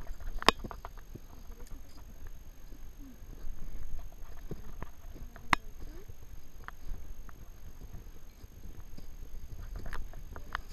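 Footsteps of several hikers on a dry dirt and grass trail, with brush rustling as they push through and a couple of sharp clicks, the loudest about half a second in and about five and a half seconds in. A low steady rumble runs underneath.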